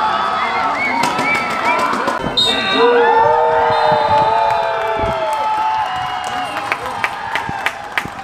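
Football spectators shouting and cheering, swelling about three seconds in into a loud, long-held yell from several voices, then settling back to chatter with a few sharp clicks near the end.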